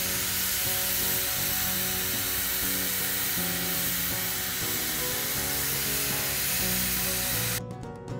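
A narrow-gauge steam locomotive hissing steadily with escaping steam, over background music. The hiss cuts off suddenly near the end, leaving only the music.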